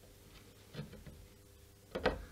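Faint clicks of steel end-nipper fret pullers gripping and working a fret out of its slot in a maple fretboard: one a little under a second in and a sharper one near the end.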